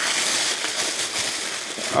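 Thin plastic packaging rustling and crinkling steadily as hands pull it open and unwrap items from a cardboard box.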